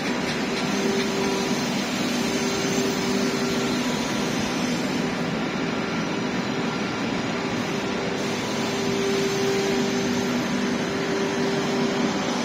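Renfe S-451 double-decker electric multiple unit rolling slowly into the station: a steady mechanical hum and running noise, with two low held tones that swell and fade.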